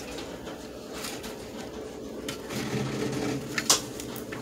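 A cardboard template being picked up and handled, a faint rustle of card with one sharp tap or click near the end, over a faint steady hum.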